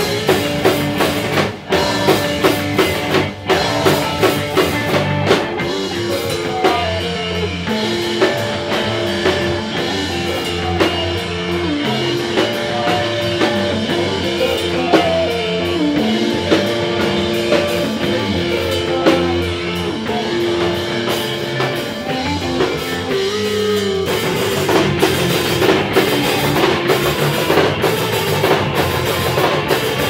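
A live rock band playing an instrumental passage: electric guitar, electric bass and drum kit with cymbals. Long held guitar notes ring over the drums, then about four-fifths of the way in the band moves into a denser, heavier section.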